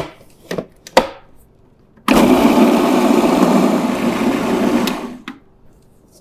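Electric food processor running for about three seconds, blending chickpeas, roasted squash and garlic into hummus. It starts abruptly about two seconds in and then stops. Before it there are a couple of light clicks as the lid is handled.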